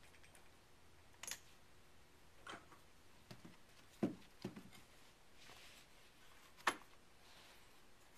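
Gunsmithing tools and rifle parts being picked up and set down on a carpeted workbench: a bench block, hammer and punch moved into place under the rifle's barrel. About six soft knocks and clicks, the sharpest about four seconds in and again near seven seconds.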